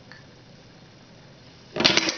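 Quiet room tone, then near the end a plastic squeeze ketchup bottle falls over onto a wooden table with a sudden loud clatter of several quick knocks.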